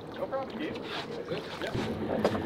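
Wind and water noise aboard an offshore fishing boat, with faint, low voices in the background and no loud single event.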